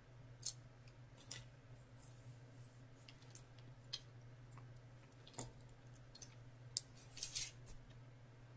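Scissors snipping through synthetic wig hair while bangs are trimmed: a series of short, irregularly spaced snips, with several close together near the end.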